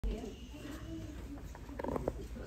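Voices of young children and adults chattering in a room, with a louder call near the end.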